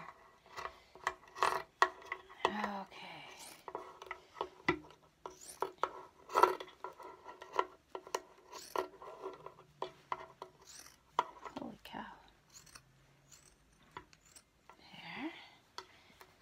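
Sharp fabric scissors cutting through thick cotton t-shirt jersey: irregular snips and rasps of the blades chewing through the heavy knit, one about every half second to a second.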